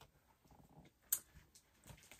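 Quiet room with faint handling noises: soft rustling, a single sharp click about a second in, and another soft rustle near the end.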